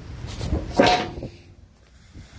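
A single short, loud animal call with a pitched tone, just under a second in.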